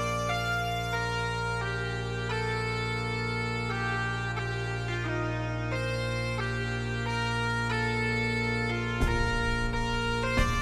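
Bagpipe music: a steady drone under a melody of held notes, from a piece composed on the Fibonacci sequence. A beat of low thumps joins near the end.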